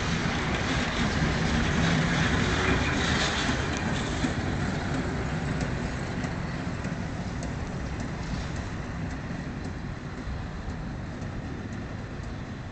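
Vintage electric tram rolling past on its rails and pulling away, its rumble fading gradually as it recedes, with a few faint clicks along the way.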